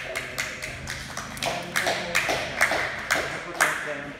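A small group of people clapping in scattered, irregular claps rather than a dense round of applause, the sharpest claps coming in the second half.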